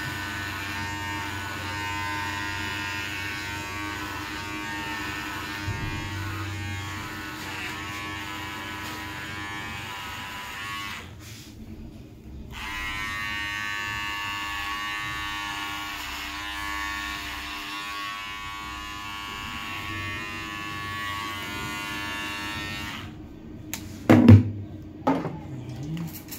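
Electric hair clippers buzzing steadily as they cut a man's hair. They go quiet for about a second and a half near the middle, then run again and stop shortly before the end.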